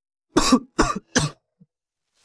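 A person coughing three times in quick succession, each cough short and loud.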